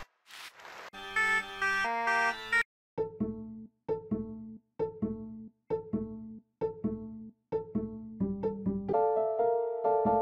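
FL Studio FLEX plugin presets auditioned one after another on the same melody. First comes a short noisy applause patch, then a bright pitched patch, then plucked acoustic-bass notes that repeat about once a second and die away quickly. Near the end, fuller sustained notes come in as the patterns play together.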